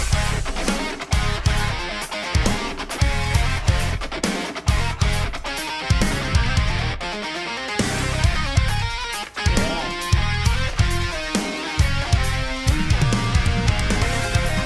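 Instrumental progressive metal track playing: tightly locked electric guitar, bass and drum hits with keyboard, the full band coming in loudly right at the start after a brief near-pause.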